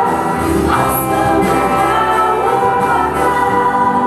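A choir singing a gospel-style Christian song with musical accompaniment, its voices sustaining long held notes.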